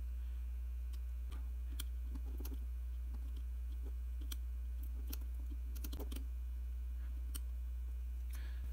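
Faint clicks as the buttons of a FNIRSI FNB48S USB meter are pressed, about eight scattered through, over a steady low hum.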